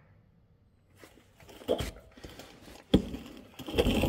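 Rustling and scraping handling noise as a handheld phone is moved around under the truck, with one sharp click about three seconds in.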